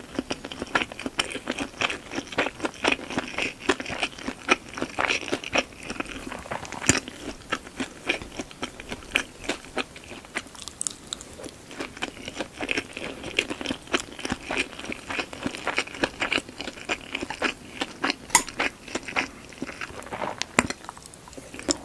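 Close-miked chewing: a person working through mouthfuls of shumai and steamed rice, a dense run of small wet clicks and crunches, with a few sharper crunches about seven seconds in and near the end.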